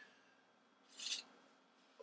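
Mostly near silence, broken about a second in by one brief scraping rub as a 150 mm stainless steel digital caliper is handled and shifted in the hand.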